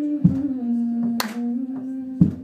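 A woman singing long held notes with no clear words, the pitch stepping down about half a second in, over acoustic guitar with sharp percussive strums.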